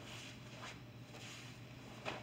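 Faint rustling of a karate gi and bare feet shifting on a mat as kata moves are made, a few soft swishes over a steady low hum.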